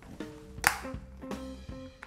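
Background music with one sharp click about two-thirds of a second in, a clear plastic lid snapping shut onto a dessert cup.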